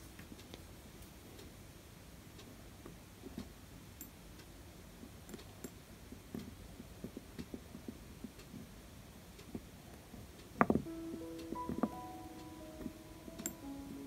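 Faint scattered ticks and scratches of a cotton bud rubbing polish over a small brass screw and plate. About ten and a half seconds in comes a sharper click, then soft background music with held notes.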